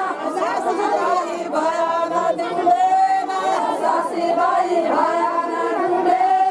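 A group of women singing a Banjara folk song in unison without instruments, in held phrases of a second or two each, with overlapping voices and chatter from the crowd around them, mostly in the first second or so.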